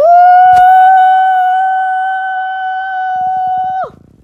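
A person's voice holding one long, loud, high-pitched "ooh", swooping up into the note, sustaining it for nearly four seconds and dropping off at the end. There is a sharp click about half a second in.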